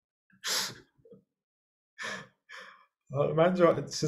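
Short breathy laughing exhalations: one about half a second in and two more around two seconds.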